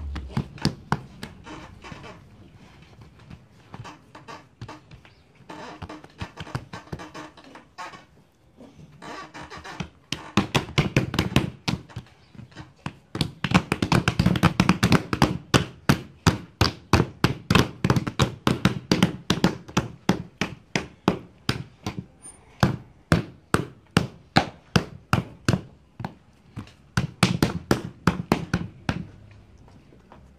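Hands patting and pressing a flour-dusted sheet of tamal masa flat on a work table: a long run of soft slaps, a few per second. It is sparse at first and thickens from about a third of the way in until just before the end.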